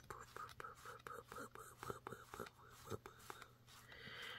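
Faint whispering in short repeated bits, while the cardboard spin wheel of a board book is turned.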